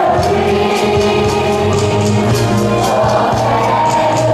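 A large group of voices singing together over backing music with a steady percussion beat.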